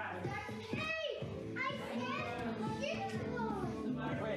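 A young child's high-pitched voice calling out in play, several times, over background music with a steady beat.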